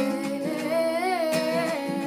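A woman singing one long wordless note with vibrato, swelling up in pitch at the middle and settling back, over a ringing acoustic guitar chord.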